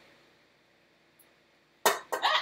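Low room tone, then near the end a single sharp, loud clang as the stand mixer is set going.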